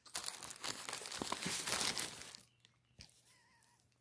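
Paper sandwich wrapper crinkling as it is handled, a dense crackle for about two and a half seconds, then quieter with a single sharp click about three seconds in.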